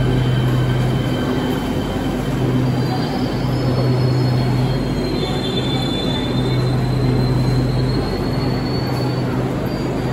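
Beijing Subway Line 5 train rolling slowly along the platform behind the screen doors: a steady rumble with a low hum that comes and goes, and faint high wheel squeal in the middle.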